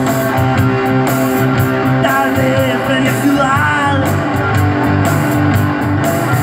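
A live rock and roll band playing steadily and loudly, with electric guitars, bass guitar and a drum kit.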